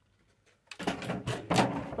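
Clear plastic toy packaging crinkling and crackling as it is handled, starting after a brief near-silent pause.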